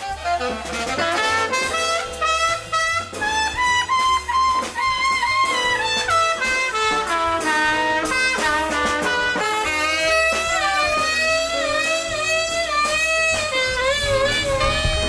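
Small jazz combo playing: a trumpet carries a bending melodic line, with saxophone, and bass notes stepping underneath.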